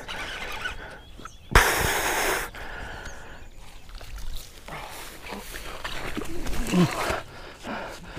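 A hooked bass and a mass of weed slop being hauled through the water to the bank on braided line, with a burst of splashing about one and a half seconds in that lasts about a second.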